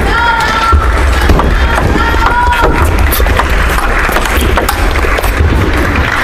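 Table tennis rally: the ball clicking repeatedly off the bats and table, over background music.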